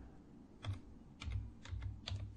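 Computer keyboard being typed on: a few faint, irregularly spaced key taps as a word is entered letter by letter.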